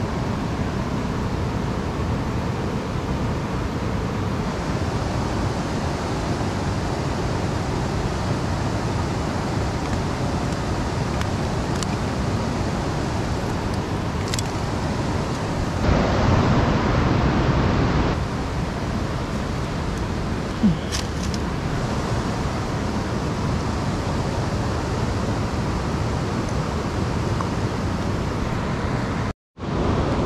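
Steady rush of a river running over rocky rapids. A louder stretch of rushing noise lasts about two seconds midway, a single sharp knock follows a few seconds later, and the sound drops out briefly near the end.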